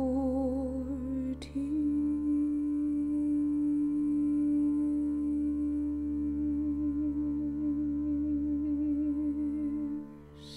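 A woman's voice humming long held notes with vibrato: a short note that breaks off with a brief click about a second and a half in, then a slightly higher note held for about eight seconds, over a low steady drone.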